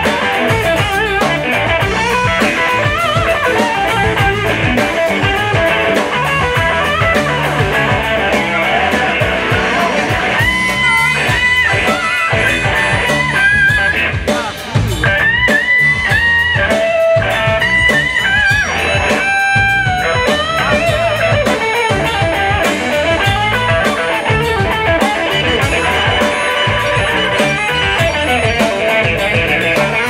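Live blues band playing an instrumental passage on electric guitars with a drum kit. From about ten seconds in, a harmonica played into a microphone plays held and bending phrases over the band for about ten seconds.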